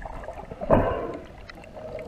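Underwater bubbling and water rushing heard through an underwater camera, with air bubbles streaming past the lens and one louder gush under a second in.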